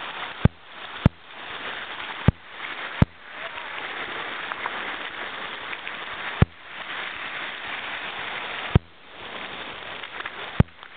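Steady rain falling in woodland, a constant hiss. Six sharp clicks are scattered through it, each followed by a brief dip in level.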